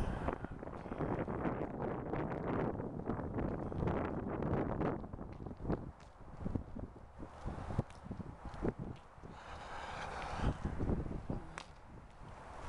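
Wind rumbling on an outdoor microphone, with scattered knocks and scuffs from handling and walking. A brief higher pitched sound comes about ten seconds in.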